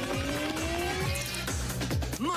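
Cartoon soundtrack: music with a bass beat thumping about twice a second, under a rising sound effect of several tones gliding upward through the first second or so.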